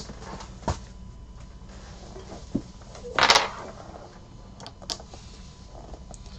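Handling noises as sealed card boxes are put away: a couple of light knocks, then a short scraping rustle about three seconds in, the loudest sound, and two small clicks near the end.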